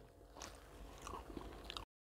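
Faint crinkles and small clicks of a plastic-gloved hand picking through oriental pastries on a plate, a few separate ticks scattered across the two seconds.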